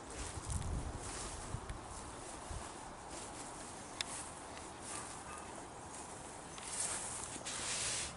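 Low thumps of footsteps on grass during the first seconds, then leaves rustling near the end as the camera is pushed in among the garden plants, with a single sharp click about four seconds in.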